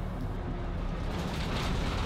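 Traffic and road noise from a vehicle driving along a city street behind a bus: a steady low engine and road rumble, with a rush of noise building near the end.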